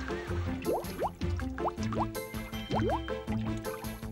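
Cartoon background music with a steady low pulse, overlaid with short rising bloops of bubbling water: a cluster of quick rising glides about a second in and a few more near the end.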